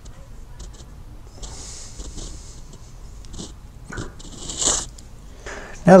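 An outside micrometer being worked on a turned steel shank: faint scattered clicks and short scratchy rustles from the thimble and the hands on the part, with a louder rustle near the end.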